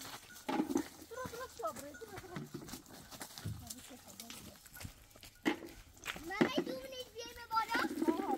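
Women and children talking in the open, with a few sharp knocks in the second half and a wavering high call near the end.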